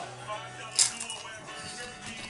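A single sharp crunch about a second in as a rolled Takis Fuego corn tortilla chip is bitten, over faint background music.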